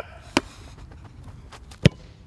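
Two sharp thuds of a football being struck, about a second and a half apart. The second and louder one, near the end, is a boot volleying the ball toward goal in goalkeeper shot-stopping practice.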